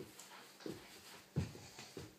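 A toddler crawling on a rug: two soft, low thumps of hands and knees on the carpet, about two-thirds of a second in and again near the end, in a quiet room.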